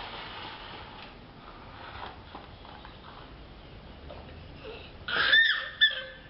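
A young child squeals in a high pitch, one longer squeal about five seconds in and a short one just after, over a faint background hiss.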